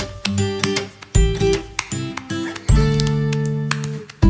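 Background music of strummed acoustic guitar, a new chord struck about every second and a half and left to ring.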